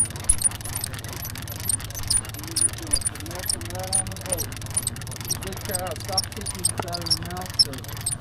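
Conventional fishing reel being cranked to bring in a hooked lake trout, with light, irregular ticking about three times a second, over the steady low hum of the boat's idling engine.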